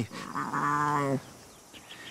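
A young lion cub gives one drawn-out cry about a second long, its pitch rising a little and then falling at the end.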